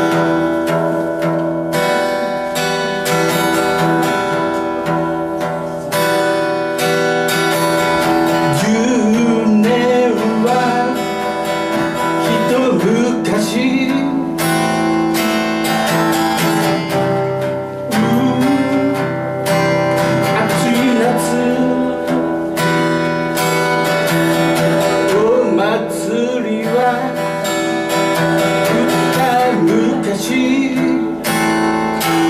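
Steel-string acoustic guitar strummed in a steady rhythm, with a man's singing voice joining it about eight seconds in.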